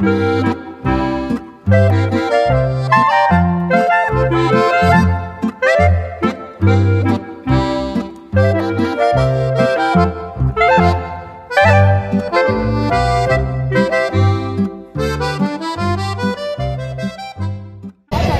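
Instrumental background music with a steady bass beat under a bright melody, stopping briefly at the very end.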